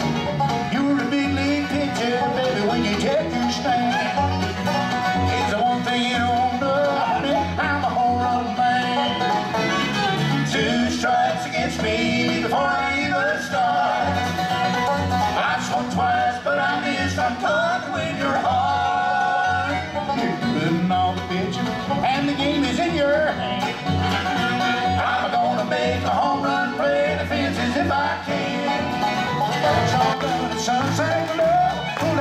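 Live bluegrass band playing fiddle, mandolin, acoustic guitar, banjo and bass guitar, with a steady bouncing bass line under the melody.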